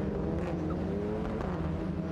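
A pack of TCR touring cars racing at speed, several turbocharged four-cylinder engine notes overlapping and slowly gliding in pitch over a steady low drone.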